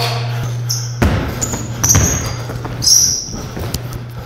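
Basketball bouncing on a gym floor during one-on-one play, with several short, high squeaks of sneakers on the court.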